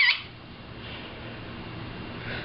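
A macaw's brief high-pitched, wavering call cuts off just after the start. A faint low hum with a few soft quiet sounds follows.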